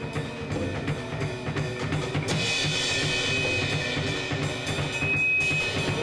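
Music with a drum kit keeping a steady beat, and a hissing high wash over it from about two seconds in until past the four-second mark.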